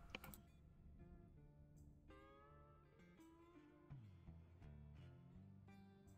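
Faint background music of slow, held notes that change pitch every second or so.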